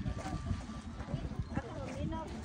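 Faint voices of people talking, over an uneven low rumble.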